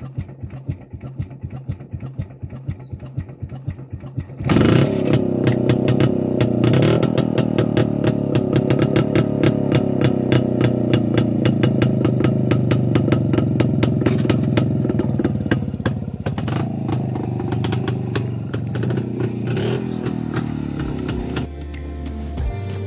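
Jawa 250 single-cylinder two-stroke engine running through its twin exhausts with its typical pumping beat. About four seconds in it picks up sharply, running much louder with a faster, denser exhaust beat that holds until near the end.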